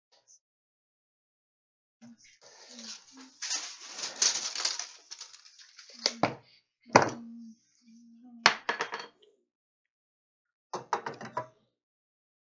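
Wood and tools handled on a workbench: a few seconds of rubbing and scraping, then three sharp knocks about a second apart, and a quick run of clicks and taps near the end.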